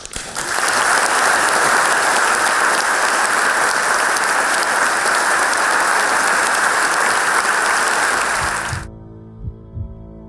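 Large audience applauding, a dense, even clapping that cuts off abruptly near the end. It gives way to soft ambient music with steady tones and low, evenly spaced pulses.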